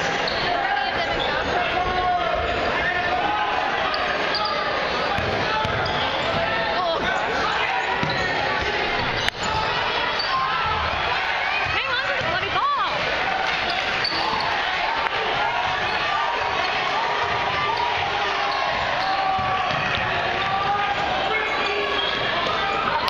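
Basketball game in a large gym: continuous crowd chatter and shouting from the bleachers, with the ball bouncing on the hardwood floor and a few short high squeaks about twelve seconds in.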